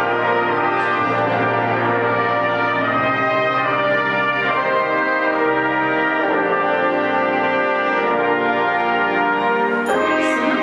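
Wind orchestra playing live, with the brass section (trombones, trumpets, horns) to the fore in full, sustained chords.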